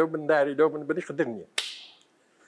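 A man speaking, his voice breaking off after about a second and a half, followed by a short hiss that fades away.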